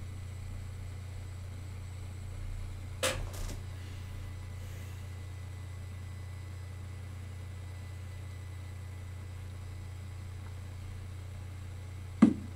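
Steady low hum of room tone, with one brief sharp click-like sound about three seconds in.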